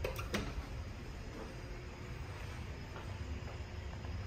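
Two short clicks as an elevator hall-call button is pressed, followed by a steady low rumble of room ambience.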